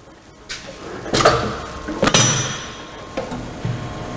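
Steel drum depalletizer's grip carriage being side-shifted along its frame: a run of metal clanks and knocks, the loudest, about two seconds in, ringing briefly.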